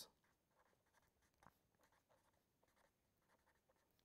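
Very faint scratching of a pen writing on paper in short, irregular strokes, close to silence.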